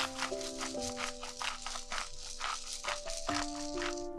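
A hand-twisted spice grinder grinding salt and pepper in quick rasping strokes, about four to five a second, stopping right at the end. Background music with a gentle melody plays throughout.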